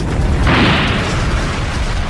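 An aircraft tire bursting in an intense cargo-hold fire: a sudden blast about half a second in that dies away within a second, over a steady low rumble.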